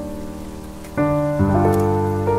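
Lofi instrumental music: soft sustained keyboard chords, with a new chord coming in about a second in and another shortly after, over a faint crackling, rain-like noise layer.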